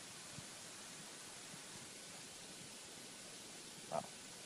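Faint, steady background hiss with no distinct source, a brief faint sound just before the end.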